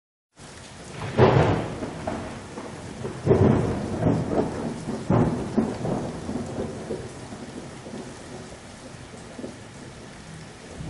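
Thunderstorm: several claps of thunder over steady rain. The loudest comes about a second in, with more near three and five seconds, and the thunder then dies down, leaving rain.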